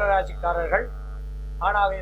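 A man speaking in Tamil, with a pause of about a second in the middle, over a steady low electrical mains hum.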